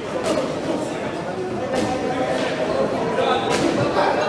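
Indistinct chatter of a crowd in a large, echoing hall, with three sharp smacks, near the start, in the middle and near the end.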